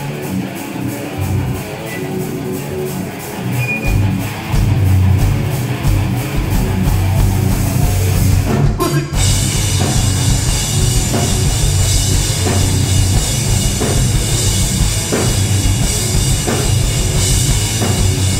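A heavy rock band playing live with electric guitars, bass and drum kit as a song starts. It grows louder about four seconds in, breaks off briefly about nine seconds in, then comes back in fuller and heavier with cymbals.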